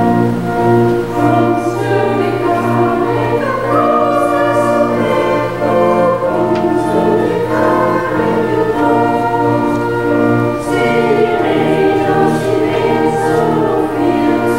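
A church choir, with the congregation, singing a hymn in Pennsylvania Dutch to organ accompaniment, in long held notes.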